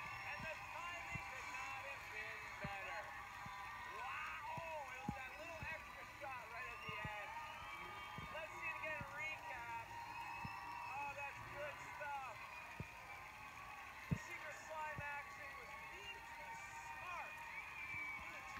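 Children's studio audience cheering and shouting right after a contestant is slimed: many excited voices overlapping, heard faintly through a laptop speaker.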